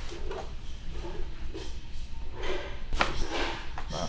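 Quiet handling sounds as hands position a person's head on a treatment table, with one sharp click about three seconds in, over a low steady hum.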